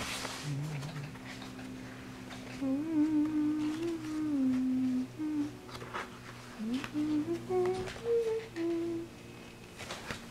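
A person humming a wandering tune, starting about three seconds in, over a steady low drone, with a few soft clicks.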